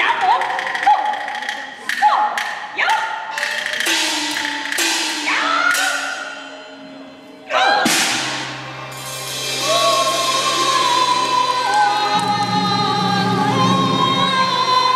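Taiwanese opera (gezaixi) percussion accompaniment: a run of loud, ringing strikes over the first six seconds. A big crash about 8 s in opens into sustained instrumental music with a low drone.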